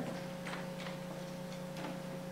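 A pause in speech filled by a steady low electrical hum with a faint higher whine, and a few faint ticks.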